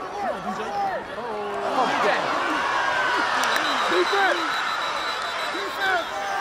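Football crowd in the stands shouting and cheering during a long run, many voices overlapping and swelling louder about two seconds in.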